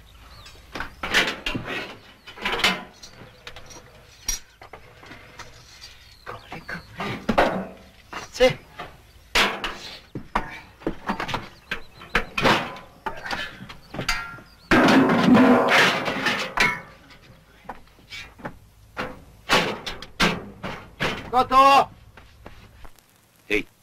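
A run of irregular knocks and clatters, mixed with voices in the film soundtrack.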